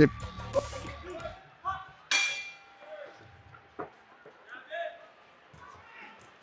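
Background music fades out, then a boxing bell rings once about two seconds in, the single ringing strike dying away slowly as the round starts. After it come faint scattered shouts and short knocks from the ring.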